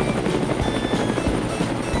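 Helicopter rotor and engine sound, running steadily, over background music.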